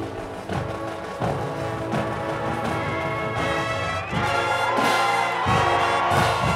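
Marching band playing, brass over drums, swelling louder about four seconds in, with some notes bending in pitch.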